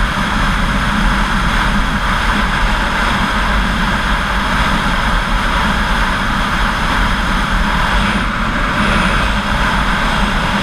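Motorcycle cruising at a steady highway speed: engine and tyre noise under a constant rush of wind over the camera's microphone, with no change in revs.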